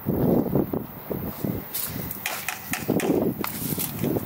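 Footsteps and handling noise from a hand-held camera being carried while walking on a concrete path: irregular thumps and rustling, with a few sharp ticks in the second half.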